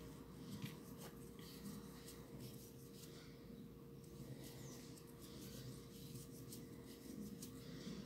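Faint scratching and rustling of a crochet hook working pink yarn through stitches, with small soft ticks, over a faint steady hum.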